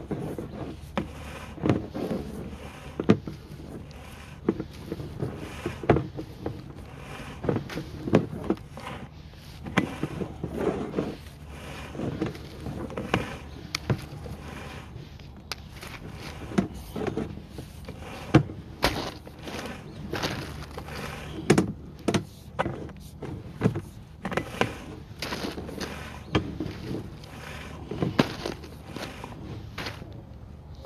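Sewer inspection camera's push cable being pulled back out of the line: irregular knocks, clatter and rubbing, about one or two a second, over a steady low hum.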